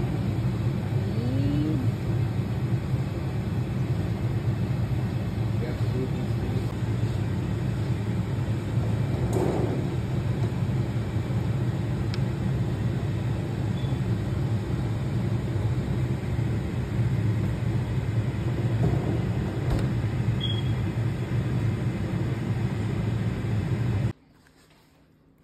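A steady low rumble, even in level throughout, that cuts off abruptly at the very end.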